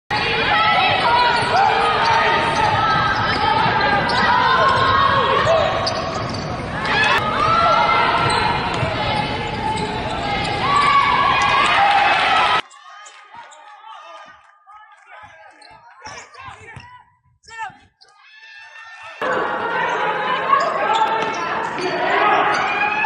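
Basketball game sound in a large hall: a ball bouncing on the hardwood court amid indistinct voices. About twelve seconds in it drops suddenly to a much quieter stretch of scattered bounces for about six seconds, then the louder game sound returns.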